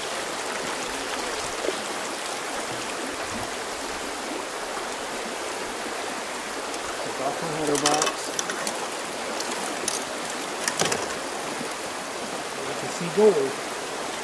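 Water running steadily down a small highbanker sluice over its riffle mat and spilling off the end into a tub.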